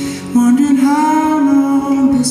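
Several male voices singing a held, wordless vocal harmony, with a louder new chord entering about a third of a second in, over acoustic guitar.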